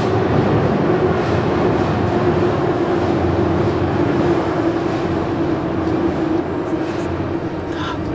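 Metro train running in the underground tunnel: a steady roar with a hum that slowly drops in pitch, easing off a little near the end.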